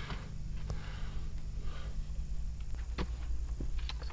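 A few faint clicks and light knocks from handling a long aluminium extension mop pole and a ladder, with some soft scraping, over a low steady hum.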